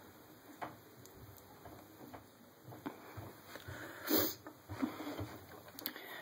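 Quiet handling noise with faint small ticks and rustles, and one short breath or sniff about four seconds in.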